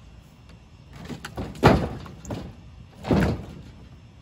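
Heavy log chunks thudding onto a wooden trailer deck as they are loaded: two loud thuds about a second and a half apart, with lighter knocks of wood on wood before and between them.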